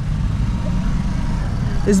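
Steady road and engine rumble heard from inside a moving car, with a faint hiss above it.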